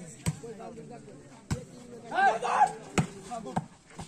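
A volleyball struck by players' hands during a rally: four sharp smacks spread over the few seconds, the last two close together, with players' shouts between them.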